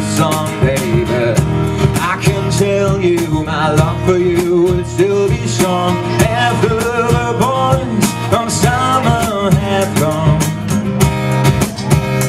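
Live acoustic duo: a strummed steel-string acoustic guitar and a man singing, with a steady beat played on a cajon and a small cymbal.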